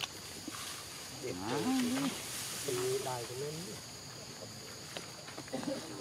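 Monkey calls: two drawn-out, wavering vocal calls, about a second and a half and three seconds in, while a baby is grabbed by an adult.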